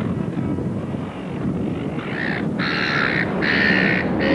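Steady low rumble of wind and a boat under way on open water, with a bird's harsh, cawing calls three times in quick succession in the second half.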